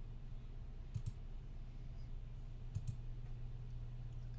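Computer mouse clicks: two quick pairs, about a second in and again near three seconds, over a steady low hum.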